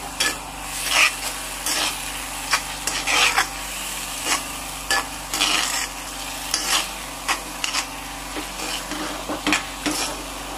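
A spoon stirring and scraping through thick sauce frying in palm oil in a honeycomb-textured wok, with irregular scrapes every half second to a second over a steady sizzle.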